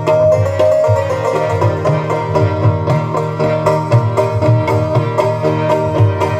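Live South Asian devotional ensemble music: harmoniums holding a sustained melody over steady tabla drumming.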